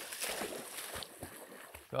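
German Shorthaired Pointer puppy bounding through shallow pond water, its legs splashing. The splashing is loudest at the start and fades as the dog moves off.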